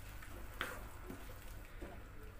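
Quiet stirring of a wet vegetable-and-lentil mixture with a wooden spatula in a nonstick frying pan, with a brief scrape about half a second in, over a low steady hum.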